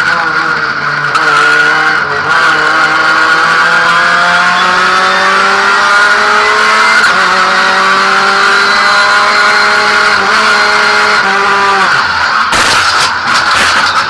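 Race car engine heard loud from inside the cockpit at high revs, its note climbing slowly with an upshift about halfway through. About twelve seconds in the engine note falls away suddenly, and a burst of loud crash impacts and scraping follows as the car crashes.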